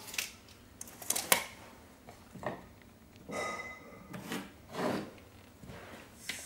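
Steel tape measure being worked along a wall: a string of separate clicks and scrapes as the blade is pulled out, set against the wall and let back, with a brief metallic ring about three seconds in.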